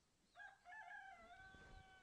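A rooster crowing, faint: one long crow that starts about a third of a second in with a short rising onset, then holds nearly level.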